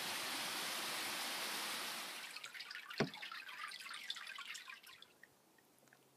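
Water dripping and trickling around a gliding canoe, over a steady hiss of moving water that fades after about two seconds. There is one sharp knock about three seconds in, and the drips thin out to faint ticks near the end.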